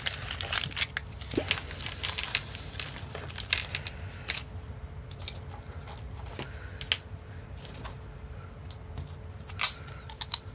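Small plastic parts bag crinkling as it is opened, followed by scattered light clicks of small screws and parts being handled, with one sharper click near the end.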